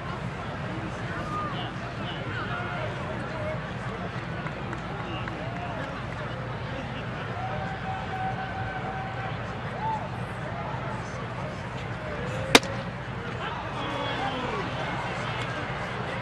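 Ballpark crowd murmur with scattered voices, then a single sharp crack about three-quarters of the way through: a 93 mph fastball popping into the catcher's mitt for a strike.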